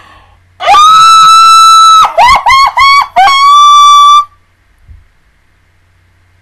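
A woman's very loud, high-pitched squeal into the microphone, muffled by her hands: one long held note, then four short rising squeaks, then another held note, ending a little past four seconds in.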